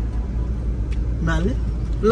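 Low, steady rumble inside a car's cabin, with a man's voice heard briefly a little past the middle.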